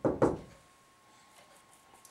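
Dry-erase marker knocking against a whiteboard: about three quick knocks in the first half second as a word is finished, then quiet room tone with a faint steady tone.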